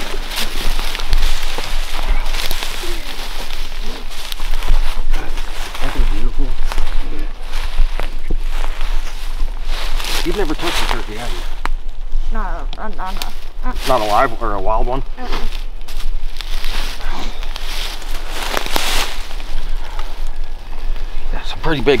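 Several people walking through deep dry leaf litter: a steady crackling rustle of crunching leaves, with voices partway through.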